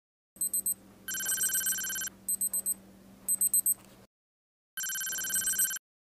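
Electronic beeping: short bursts of four quick high pips, alternating with two longer steady beeps about a second long, each starting and stopping abruptly.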